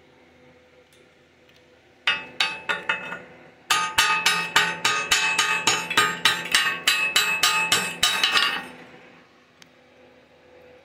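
Chipping hammer knocking slag off a fresh stick-weld bead on a steel plate, each blow ringing off the metal: a few strikes about two seconds in, then a quick run of strikes, about four a second, for some five seconds.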